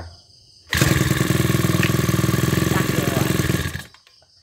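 Robin 27cc four-stroke brush cutter engine pull-started, fitted with automatic decompression. It catches and runs loudly for about three seconds, then stops suddenly.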